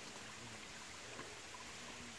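Faint steady trickle of shallow creek water running over rocks.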